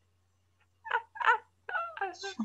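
A woman's high-pitched laughter in three short bursts, starting about a second in.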